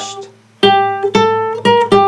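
Classical nylon-string guitar playing a single-note melody high on the neck: four plucked notes, each ringing and fading, after the tail of an earlier note dies away.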